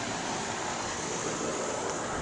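Wind blowing on the microphone: a steady rushing hiss with an uneven low rumble.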